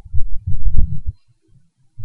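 Loud, irregular low rumbling thuds, each lasting under a second, with short quiet gaps between them.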